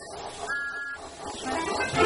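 Steam locomotive sound effects: steam hissing, with a short two-tone whistle about half a second in. Music starts to build near the end.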